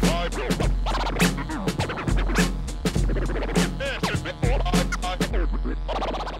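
Vinyl record scratched back and forth by hand on a Technics direct-drive turntable, the sound chopped into rapid cuts by the mixer fader, giving quick rising and falling sweeps over a hip-hop beat with a deep bass. The scratching thins out near the end.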